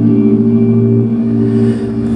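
Live indie/post-rock band playing a held, droning chord on electric guitars and bass guitar, without vocals.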